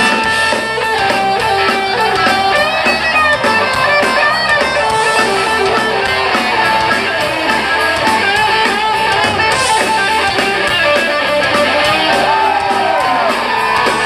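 Ska-punk band playing loud live music in an instrumental passage without singing: electric guitar, drum kit and trombone, heard from within the crowd.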